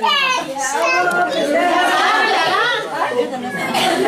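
A room full of voices, women and children talking and calling out over each other, with a high-pitched voice sliding down right at the start.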